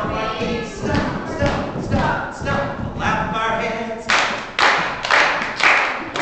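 A man and small children singing and chanting a pirate song with no instrument, with some thuds on the floor. Near the end come four loud, noisy bursts about half a second apart.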